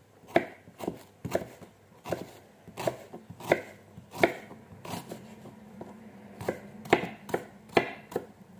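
Kitchen knife slicing an onion on a wooden cutting board: the blade knocking on the board in irregular strokes, about two a second, with a short pause a little past halfway.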